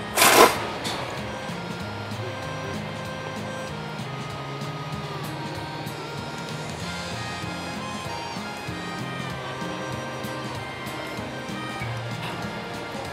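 A loud slurp of thick ramen noodles about half a second in, over steady background music that runs on.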